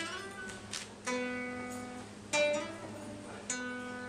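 Acoustic guitar strummed solo: about five chords, each struck sharply and left to ring and fade before the next.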